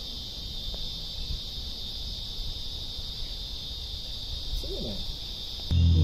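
A steady, high-pitched insect chorus drones over a low outdoor rumble. A short faint call is heard near five seconds in, and a loud low hum starts just before the end.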